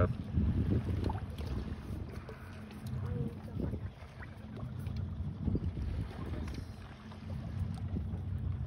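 Wind buffeting the microphone and water lapping at a small boat's hull, making a low, uneven rumble.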